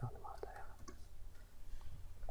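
A few soft computer keyboard and mouse clicks, with faint breathing over a low steady hum.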